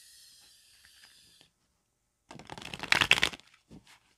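A deck of tarot cards being shuffled by hand: a faint steady hiss for the first second and a half, then a quick run of rapid clicking card sounds, loudest about three seconds in, lasting about a second, with a couple of stray clicks near the end.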